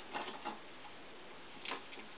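A few light clicks and short rustles of hands handling small objects, in a cluster in the first half-second and once more near the end.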